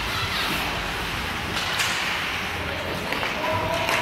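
Ice hockey play heard in a rink: a steady wash of skates on ice and crowd noise, with sharp knocks of sticks and puck a couple of times and a brief shout near the end.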